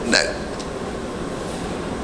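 A man says one short word into a handheld microphone, then a steady background hum of room noise runs on with no other event.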